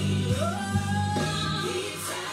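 Gospel song: a singer's voice slides up into a long held note over sustained low accompaniment.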